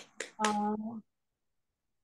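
A brief spoken fragment that opens with two short sharp clicks, then cuts to dead silence for about the last second, as a call's noise gate does.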